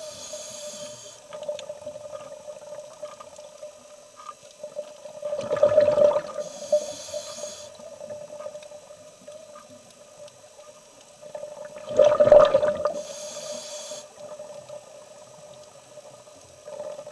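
Scuba diver breathing through a regulator underwater: a hissing inhale, then a loud burst of exhaled bubbles, repeating about every six or seven seconds over a steady hum.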